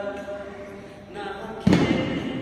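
Several voices singing a Tibetan song together, fading briefly around the middle and then picking up again. Near the end a single loud thump cuts in, louder than the singing.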